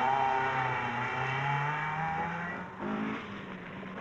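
Rally car engine held at high revs on a loose gravel stage, its note fairly steady with a slight waver, then fading; a second, lower engine note comes in briefly near the end.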